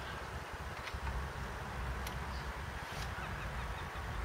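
Wind buffeting the microphone in uneven gusts, with a few light clicks as a fishing rod is handled and put together.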